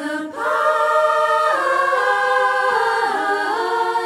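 Women's choir singing a cappella: several voices swell into a held chord about half a second in, then move to new notes twice, some sliding downward.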